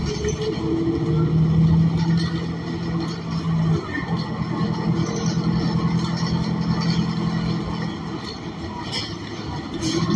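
Interior of a New Flyer XN40 natural-gas bus under way: the Cummins Westport ISL G engine and Allison B400R automatic transmission running with a steady low drone, whose pitch shifts about four seconds in.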